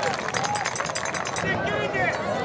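Indistinct voices of players and spectators calling out at a lacrosse game, with no clear words.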